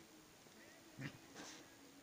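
A single brief, short cat vocal sound about halfway through, followed by a soft rustle, in an otherwise near-silent room.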